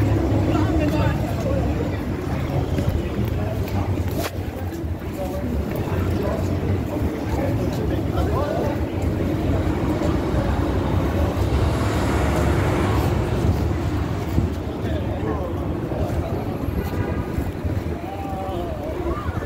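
Busy city street: a steady low rumble of traffic with passersby talking. A sharp click about four seconds in, and a brief hiss around twelve to thirteen seconds.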